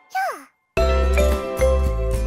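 A cartoon character's short falling vocal sound, a brief silence, then background music with a steady bass and tinkling chimes begins about three quarters of a second in.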